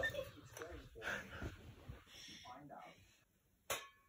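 Faint voices in the room, then a short silence and a single sharp tap near the end as a badminton racket strikes a shuttlecock on the serve.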